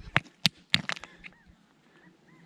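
Stones clacking together three times in quick succession as river-gravel cobbles are handled, with a few lighter ticks after. A few faint bird chirps follow.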